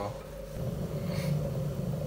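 Dualit Lite electric kettle heating water and descaler solution with its lid open: the water starts to rumble and bubble as it nears the boil, the rumble building from about half a second in.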